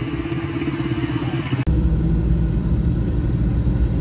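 A motor vehicle's engine running steadily while driving along a road, with a pulsing low hum. About a second and a half in, the sound changes abruptly and the low engine note becomes stronger.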